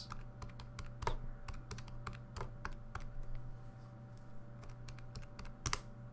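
Keys being tapped in quick, irregular clicks as a numerical calculation is entered, with one louder click near the end. A steady low hum runs underneath.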